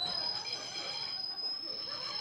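A steady high-pitched electronic whine from the band's amplified gear, stepping up in pitch right at the start and then holding one note.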